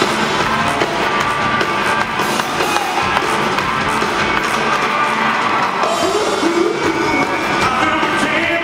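A live rock and roll band playing loudly in a large hall, recorded from among the audience, with some singing over the band.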